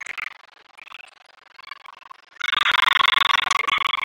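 Crowd of girls' voices cheering and shouting together with clapping, breaking out loudly about two and a half seconds in after a quieter stretch.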